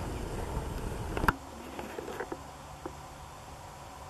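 Handling noise on the camera's microphone: a low rumble for about a second that ends in a sharp knock, then a few lighter clicks over a faint steady hum.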